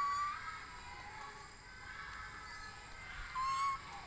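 Baby macaque giving two short, high coo calls, each a brief whistle-like note rising slightly in pitch: one right at the start and a louder one about three and a half seconds in.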